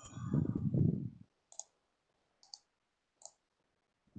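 A muffled low rumble, like a microphone being handled, over the first second, then three short, sharp computer-mouse clicks spaced a little under a second apart as someone tries to share a screen in a video call.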